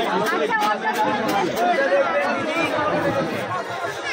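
Several people chattering at once, their voices overlapping in a busy crowd.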